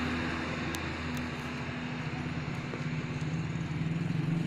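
A motor vehicle engine running nearby, a steady low hum that grows a little louder near the end.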